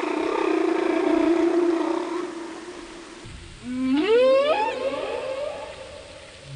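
Humpback whale calls: a long low moan that slowly falls and fades, then, about three and a half seconds in, a rising upsweep call lasting about a second.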